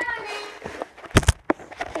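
A voice trails off, then about a second in come two quick heavy thumps close together and a lighter one just after.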